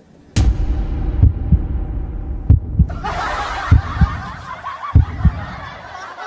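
Heartbeat sound effect: a sharp hit, then four slow double thumps a little over a second apart. About halfway in, a hissing, chattering noise comes in.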